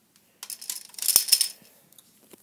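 A plastic Connect Four disc dropped into a slot of the grid, clattering down the column and settling on the discs below: a quick run of rattling clicks starting about half a second in, loudest just after a second.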